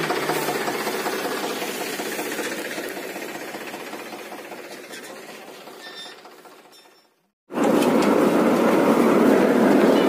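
Paddy threshing machine running steadily. The sound slowly fades over about seven seconds, drops out briefly, then returns loud and close.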